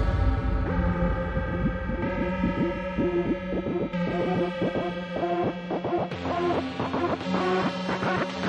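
Dark techno/EBM industrial electronic track: sustained synthesizer chords with a line of short, quick repeated synth stabs over a driving low pulse.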